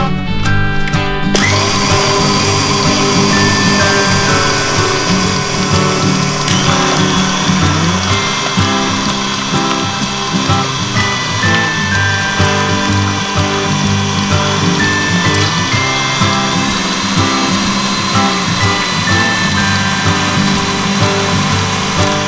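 KitchenAid Artisan stand mixer switched on about a second in, its motor running steadily as the wire whisk beats choux paste in the steel bowl, with background music throughout.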